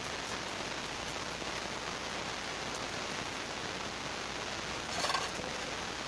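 A steady, even hiss with a rain-like quality. About five seconds in there is one short scraping sound.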